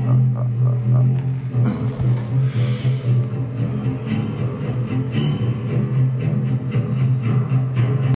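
Music with one low note held throughout and a fast, even pulse running over it.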